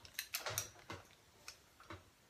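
Faint, scattered clicks and light handling noises from a 1-inch Hot Tools curling iron and hair being worked: the iron's clamp clicking open and hair being drawn out, about half a dozen small ticks in two seconds.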